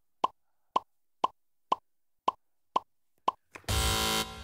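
Quiz-show letter-reveal sound effect: short electronic blips about two a second, seven in all, one for each letter revealed on the board. Near the end a contestant's buzzer goes off, a loud buzz tone lasting about half a second.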